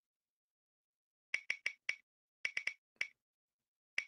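About eight short, sharp clicks in two quick groups of four, about half a second apart, after a stretch of dead silence.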